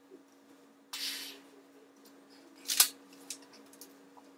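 A short hiss about a second in, then a sharp snap near three seconds and two fainter clicks, from a boy playing with a LEGO toy gun. A faint steady hum runs underneath.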